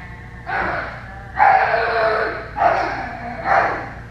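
A person's voice imitating a dog, in four short bursts of wordless noise; the second, starting about a second and a half in, is the loudest and longest.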